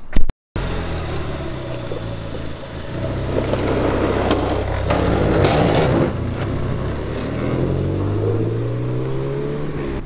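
A lowered Ford Fiesta ST's engine as the car drives off past the camera, getting louder in the middle, then revving up with a rising pitch near the end as it accelerates away. A brief knock right at the start.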